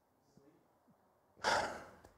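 A man's short, breathy sigh into a close microphone about one and a half seconds in, fading over about half a second, after a faint voice from further off.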